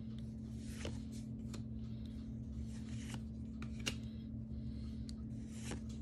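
Magic: The Gathering trading cards being slid off the front of a hand-held stack and tucked behind, one at a time. Each card makes a faint, short papery scrape, about once a second, over a steady low hum.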